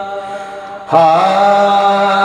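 A man singing a naat unaccompanied into a microphone, on long held notes. One note tails off, and about a second in he comes in on a new long note ('haa'), wavering briefly and then held steady.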